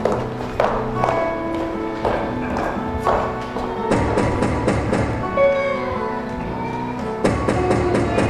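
Instrumental music from a live rock band: sustained pitched notes with scattered percussive hits, and two quick flurries of hits, about four seconds in and again near the end.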